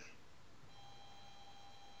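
Faint room tone with a soft click at the start, then a faint steady high electronic whine, several pure tones at once, that begins under a second in and holds.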